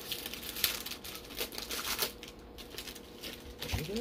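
Plastic foil wrapper of a jumbo pack of baseball cards crinkling as it is opened, irregular crackles busiest in the first two seconds and fainter after.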